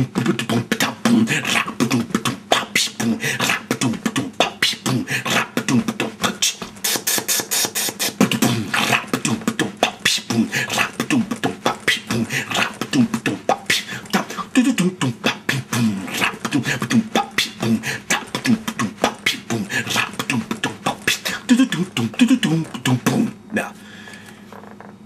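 Old-school vocal beatbox: a man imitating a drum kit with his mouth, kick-drum booms, snare and cymbal hisses in a long, fast, unbroken groove. It stops abruptly just before the end.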